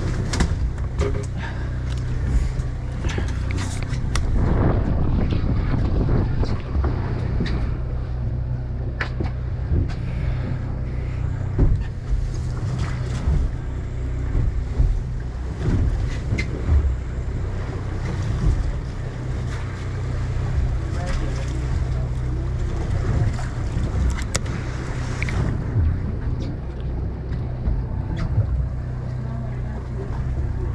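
A boat's engine running with a steady low hum, under wind buffeting the microphone, with scattered knocks and bumps on deck.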